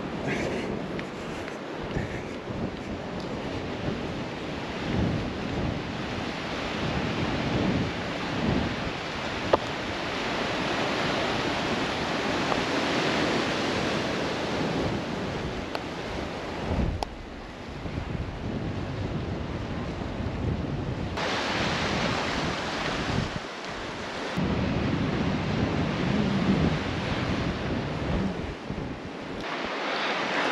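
Sea waves washing against a rocky shore, mixed with wind rushing over the microphone; the rushing swells and eases and changes abruptly a few times.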